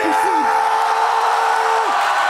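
Crowd at a freestyle rap battle cheering and yelling in reaction to a finishing punchline, with one long, steady held shout over the din that breaks off near the end.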